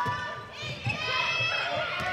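Girls' high-pitched voices calling out across an indoor handball court during play, over a run of low thuds from players' footsteps.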